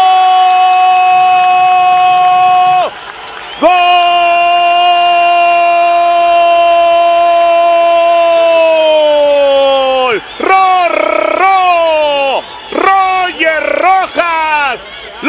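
Football commentator's long drawn-out goal cry of "gol": one held note of about three seconds, a brief break for breath, then a second held note of about six seconds that slides down in pitch at the end, followed by short excited shouts.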